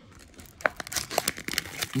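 Paper-and-plastic packaging of a Pokémon mystery box being handled and torn open. It crinkles, with many sharp crackles starting about half a second in.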